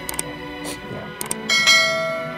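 Slow, sad background music with sustained tones, and a bell-like chiming note struck about one and a half seconds in.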